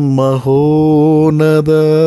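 A man's voice chanting a Christian prayer in long, held notes, each phrase drawn out on a steady pitch with short breaks between.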